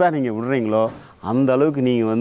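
A man talking, with a brief pause about a second in. A faint steady high-pitched hum runs underneath.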